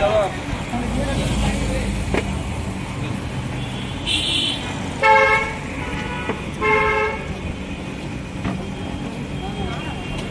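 Vehicle horns honking in street traffic: a short high honk about four seconds in, then two louder honks about a second and a half apart, over steady traffic noise and voices.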